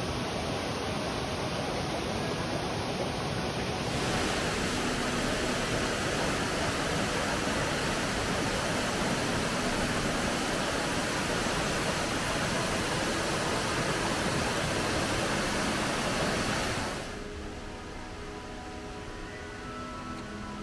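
Waterfall, a steady loud rush of falling water that turns abruptly brighter and hissier about four seconds in. It drops away sharply about three seconds before the end, leaving faint background music.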